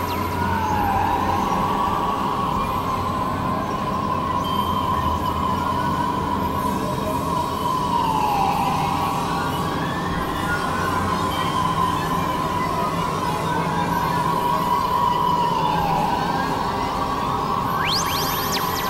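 Synthesizer drone: a high held tone that drops suddenly and then glides slowly back up, three times about seven seconds apart, over a dense, noisy wash of sound.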